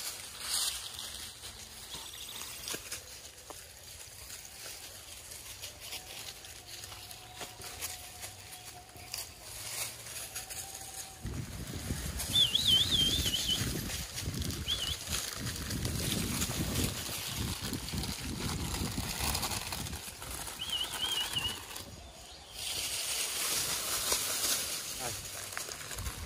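Rustling and shuffling on dry leaves and a plastic mat as langur monkeys and a person move about, growing louder about halfway through. A bird gives a short warbling whistle three times in the second half.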